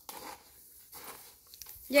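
Wooden spoon faintly scraping and stirring toasted rice and seeds in a plastic tub, with a few small ticks. A woman starts speaking at the very end.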